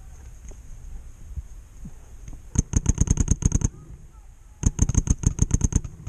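Paintball marker fired in two rapid bursts of about a dozen shots each, roughly ten shots a second, with a pause of about a second between the bursts.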